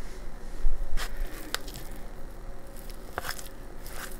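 A fork working through pulled pork in a plastic bowl: soft, irregular squishing and scraping, with a few sharp clicks as the fork knocks the bowl.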